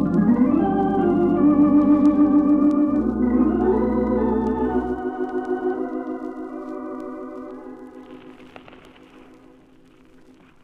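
Organ music bridge marking a scene change: sustained chords with a slow vibrato, the bass notes dropping out about halfway through, then fading away.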